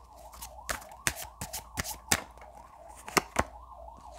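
Tarot cards being shuffled by hand, overhand: a loose run of soft clicks and slaps as the cards are dropped from one hand into the other. A faint, wavering tone sounds in the background throughout.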